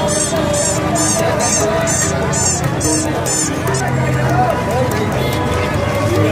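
Plastic toy horns honking amid crowd chatter. A high chirp repeats about twice a second and stops a little past halfway.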